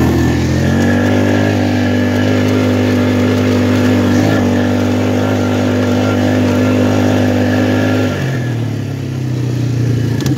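ATV engine revving up and held at high revs while under way. The pitch climbs in the first second, holds steady, then drops about eight seconds in as the throttle is let off.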